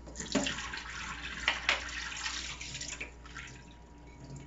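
Tea tanning solution poured out of a glass jar into a stainless steel sink, splashing and trickling, with a couple of sharper splashes about halfway; it tails off near the end.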